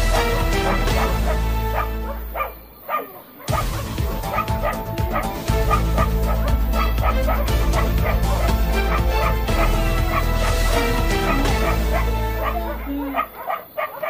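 Dogs barking and yelping repeatedly over background music with a steady deep bass. The music drops out briefly about three seconds in.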